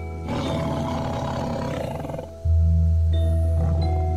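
A tiger's roar, lasting about two seconds from shortly after the start, over background music of steady held tones; a loud low bass note comes back in just after the roar ends.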